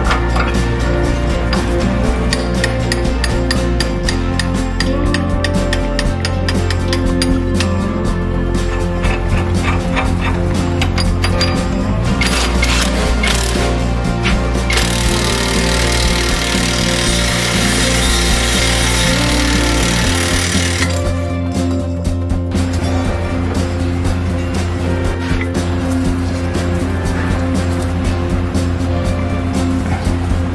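Background music with a steady beat throughout. A power tool runs in a short burst about twelve seconds in, then steadily for about five seconds, driving the screw of a ball joint separator to press the tie rod end out of the steering knuckle.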